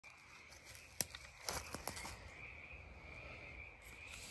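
Quiet outdoor ambience: a faint, steady high-pitched chorus of small calling animals, with a few sharp clicks between one and two seconds in.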